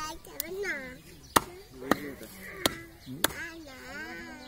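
Meat cleaver chopping goat meat on a round wooden log block: five sharp strikes, irregularly spaced about half a second to a second apart, with voices in the background.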